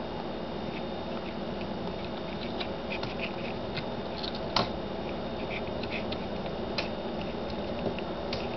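Small homemade pulse motor of the Newman type running with a steady hum, with scattered faint clicks and one sharper click a little after halfway.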